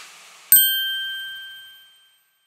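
A single bright chime struck about half a second in, its high, clear tones ringing and fading away over about a second and a half.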